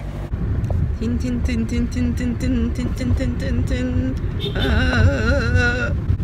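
Low rumble of a car driving, heard from inside the cabin. Over it, a song with a sung melody in long held notes plays, and a higher wavering voice line joins over the last second and a half.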